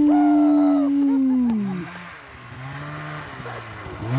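A man's long, drawn-out yell held on one pitch that falls away about two seconds in, followed by a quieter, lower vocal sound.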